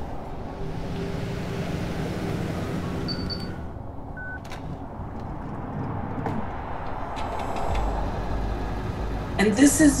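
Ambulance-scene ambience: a steady low drone and background noise, with two short high electronic beeps about three and four seconds in and a deeper rumble coming up near the end.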